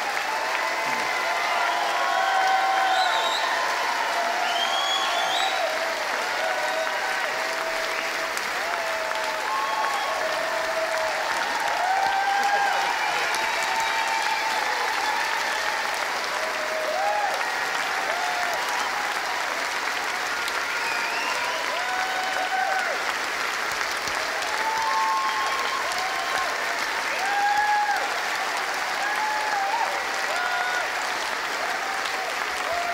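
Large audience giving a standing ovation: sustained, steady applause with many voices cheering through it.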